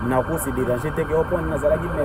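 Speech: a person talking, over a steady low background hum.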